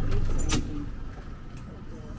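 A low rumble, loud for about the first half second and then dropping away, with a sharp click as it drops.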